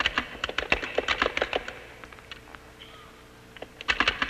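Keystrokes on a computer keyboard as a line of text is typed: a quick run of clicks, a pause of about two seconds, then a few more keystrokes near the end.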